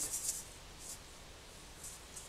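Faint rubbing and rustling from an asalato's balls being held and handled, with no shaking or clicking.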